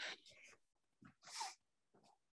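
Near silence in a pause between speakers, broken by a brief faint noise about a second and a half in.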